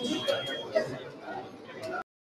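Indistinct chatter of several people in a room as a press conference breaks up, with a thin steady high tone for about half a second at the start; the sound cuts off abruptly at the end.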